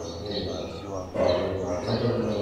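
A man speaking at a steady pace, with a short pause about a second in.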